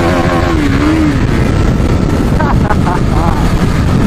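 KTM 390 Duke's single-cylinder engine cruising steadily at about 60 km/h, with a constant rush of wind on the camera microphone. A drawn-out voice is heard in the first second, and short shouts about two and a half seconds in.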